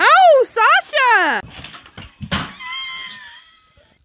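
A child's high-pitched shrieks: three quick cries that rise and fall in the first second and a half, then a short knock and a held, wavering cry that fades out before the end.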